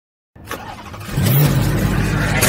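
A car engine sound, building up and getting loud about a second in with a low, slightly rising rumble, like an engine being revved.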